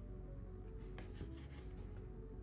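Quiet background music, with a short scratchy rubbing of a paper postcard in the hands from just under a second in until near the end.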